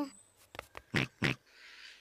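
Cartoon pig snorts: a few short snorts, the two loudest about a second in, followed by a faint hiss near the end.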